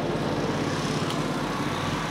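A truck engine running steadily, with a fast, even pulse from its firing.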